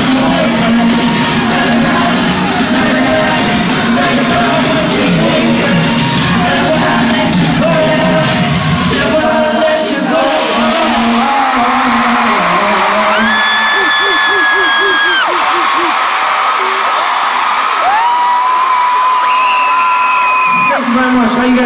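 Live pop concert music and singing heard in a large arena hall, recorded from the audience. The song with its bass runs for about the first ten seconds, then the bass drops out and the crowd cheers, with long high-pitched screams held twice in the second half.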